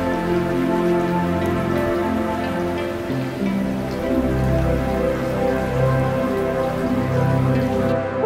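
Steady rain falling, mixed with slow background music of long held notes that shift every second or so.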